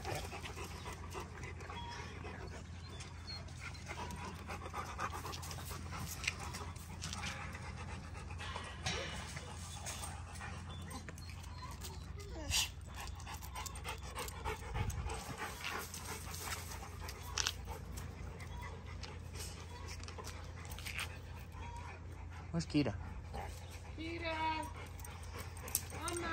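A Rottweiler panting, with a few scattered sharp clicks over a steady low rumble.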